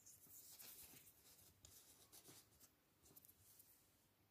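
Very faint scratchy rustling of fingers handling and turning small curly birch guitar picks, in short stretches with small clicks through the first three and a half seconds or so.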